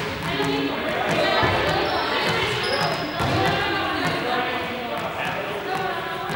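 Balls repeatedly bouncing and knocking on a sports-hall floor, echoing in the large hall, under indistinct chatter of several voices.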